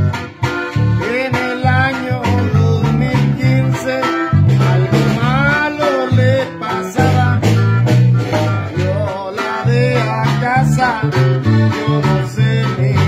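Acoustic guitar playing a corrido-cumbia: plucked bass notes in a steady rhythm under a melody whose pitch bends and wavers.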